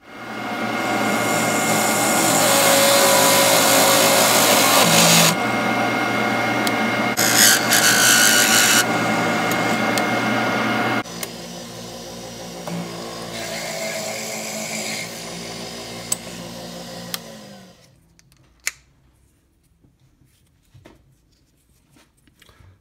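Lathe spinning a redwood burl blank while a 19/32-inch twist drill in the tailstock bores into it: loud drilling noise for about the first eleven seconds, with a harsher burst around seven to nine seconds. The noise then drops and the lathe runs on more quietly, winding down with falling pitch near the end, followed by a couple of small clicks.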